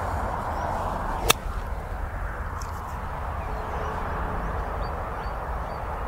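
A single sharp click of a blade five iron striking a golf ball, about a second in, over a steady low background rumble.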